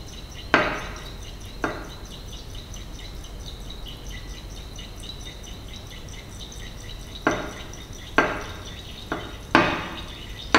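Glass conical flask clinking against the bench as it is swirled under a burette, six sharp knocks with a short ring: two near the start, then four in the last three seconds.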